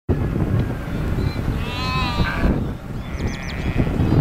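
A sheep bleats about two seconds in, followed shortly by another higher call, over a steady low rumble of noise.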